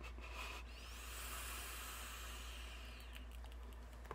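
A long drag being pulled through a vape atomizer fired on a tube mod: a faint, airy hiss of air drawn past the heated coil that swells about a second in and fades out near the end.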